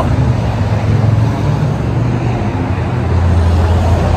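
Road traffic on a busy street: car engines and tyres passing close by, a steady low rumble that grows a little stronger near the end.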